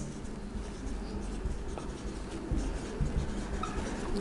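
Marker pen writing on a whiteboard: a run of short, scratchy strokes as words are written out.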